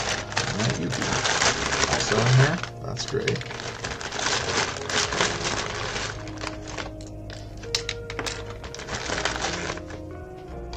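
Hands rummaging through a plastic tray of loose plastic building bricks, the bricks clicking and clattering against each other, with a plastic parts bag crinkling in the first few seconds; the clicks thin out to scattered ones later. Background music plays underneath.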